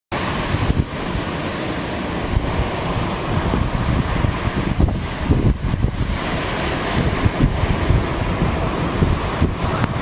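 Wind buffeting the microphone in irregular gusts, over the steady rush of surf breaking on a sandy beach.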